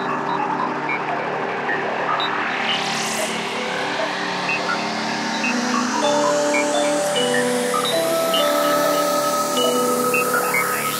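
Beatless intro of a psytrance track: held synth tones, scattered short electronic bleeps and a slow rising sweep that builds through the passage, with no kick drum or bass.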